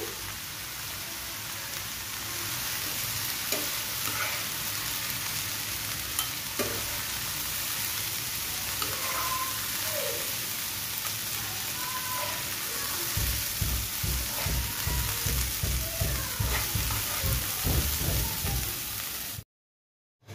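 Bottle gourd greens (lau shak) sizzling in a frying pan as a metal spatula stirs and tosses them. In the last six seconds a quick run of low thumps comes several times a second, and the sound cuts off abruptly shortly before the end.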